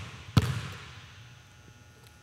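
A basketball bounced once on a hardwood gym floor about half a second in, a sharp thud that rings out in the gym's echo. It follows a bounce just before, making the two dribbles of a free-throw routine.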